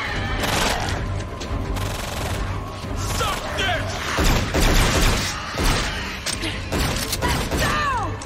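Action-film soundtrack: score music under a dense layer of sound effects, with rapid gunfire-like bursts and impacts. Shrill gliding sounds come about three seconds in and again near the end.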